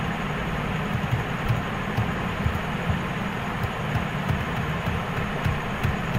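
Steady rumbling background noise, with a few faint short clicks.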